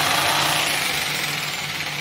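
A 610-watt corded electric jigsaw running free with no cut, its motor and reciprocating blade making a steady, even noise. It holds full speed on inverter power, running easily.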